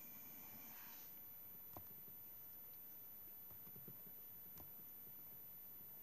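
Near silence: room tone, with a few faint, short clicks.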